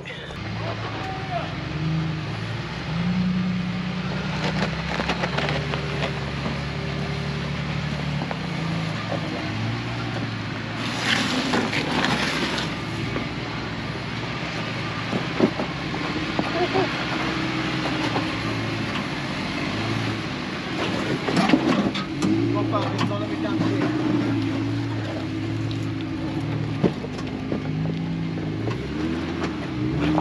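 Jeep Gladiator Rubicon's engine running at low revs, its pitch rising and falling as the truck crawls over snow-covered boulders, with occasional knocks of the tyres and chassis on rock.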